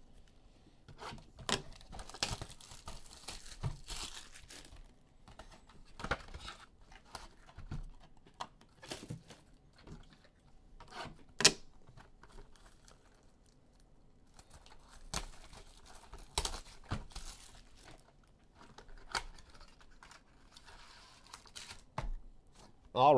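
A 2019 Bowman Chrome hobby box of baseball cards being torn open by hand: its plastic wrap and cardboard crinkle and crackle irregularly, with a few sharper snaps, as the box's flaps are pulled open.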